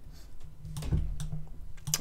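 A few scattered light clicks and taps from handling a computer as the on-screen page is scrolled, over a faint low steady hum.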